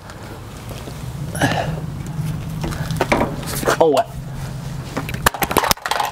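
A few quick knocks from a hexagonal steel bar being handled under a semi-trailer, near the end, over a steady low hum. A man mutters briefly.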